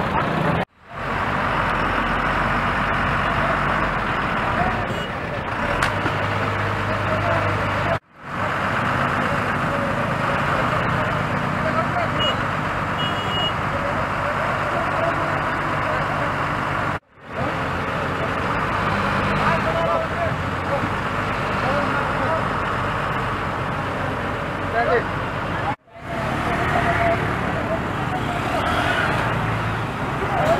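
Roadside traffic with motorcycle and truck engines running under the murmur of many people talking. The sound drops out abruptly four times, about eight to nine seconds apart, and comes straight back each time.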